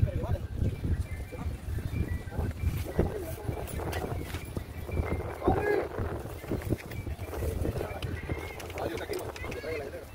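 Indistinct voices and shouts of players and spectators across an open soccer field, over a low rumble of wind on the microphone.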